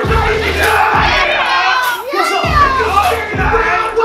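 Crowd of spectators shouting and hyping over loud hip-hop music with a heavy bass beat that pulses about once a second.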